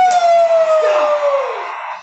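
A single voice letting out one long, loud celebratory yell, held on a high pitch that sags slowly and falls away about a second and a half in: cheering a touchdown.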